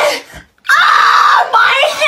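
A young man screaming loudly for nearly a second, starting a little over half a second in, with the cry turning into a higher, wavering wail near the end.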